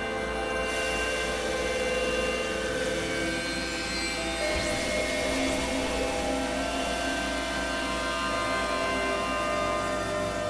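Experimental electronic drone music: many sustained synthesizer tones layered over each other, with a hiss that comes in about half a second in. Around three to four seconds in, some tones drop out and new ones take their place.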